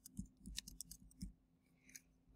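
Faint computer keyboard typing: a handful of separate keystrokes in the first second or so as a short name is typed in.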